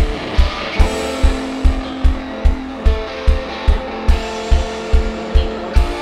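Live rock band playing: electric guitar notes over a steady, even kick-drum and bass beat, about two and a half beats a second.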